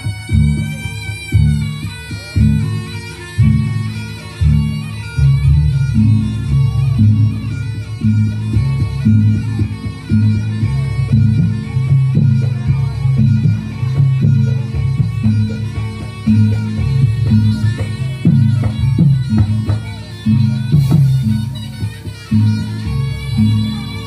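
Reog gamelan music accompanying the lion-mask dance: a reedy slompret shawm plays a wavering, wailing melody over a steady beat of drums and gongs. It is amplified and loud.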